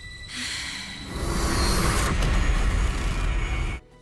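Soundtrack of a TV drama clip: a rumbling, hissing swell that grows louder about a second in and cuts off abruptly just before the end.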